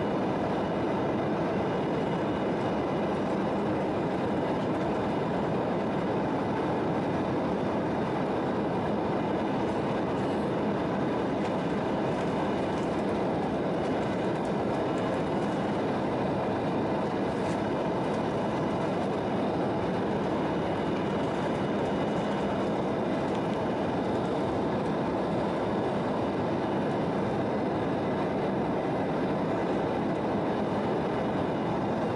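Steady cabin noise of an Embraer 170 climbing out: the roar of its wing-mounted GE CF34 turbofans and rushing air, heard from inside the cabin at the window seat over the wing. The level is even throughout, with faint steady whining tones above the roar.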